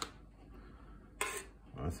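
Stainless steel slotted spoon knocking and scraping against a stainless cooking pot while scooping candied jalapeños out of syrup: a sharp clink right at the start and a brief scrape a little over a second in.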